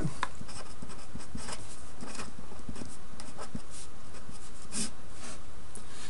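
Faint scratching of handwriting, short irregular strokes as numbers are written out for a multiplication, over a steady low hum.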